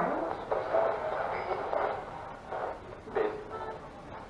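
Handheld spirit box sweeping through radio stations: choppy, thin fragments of radio voices and static from its small speaker, chopped up every fraction of a second.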